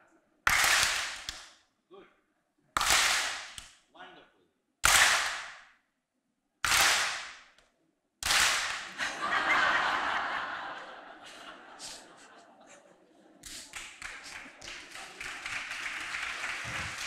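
A seated audience clapping together in a follow-the-leader exercise, one sharp collective clap about every two seconds, five times in all. After the fifth come laughter and voices, then scattered clapping near the end.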